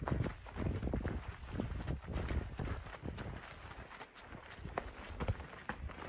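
A hiker's footsteps on wet grass and mud, irregular knocks and clicks as he steps up onto a wooden stile, over a low rumble.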